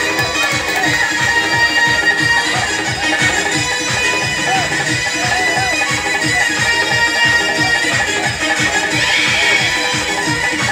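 Live traditional music: quick, steady drum strokes under a held, wavering melody line.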